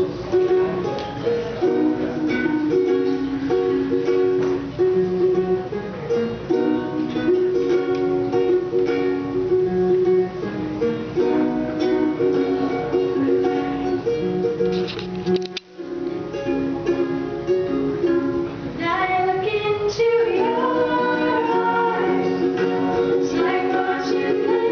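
Three ukuleles strummed together in a steady chord pattern, with a brief break about two-thirds of the way through. Near the end, female voices come in singing over the strumming.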